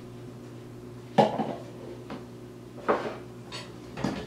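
Clatter of hard household objects being handled off screen, like dishes or pans being set down: a sharp knock about a second in, the loudest, then fainter ones, and another loud one near three seconds. A steady low hum runs underneath.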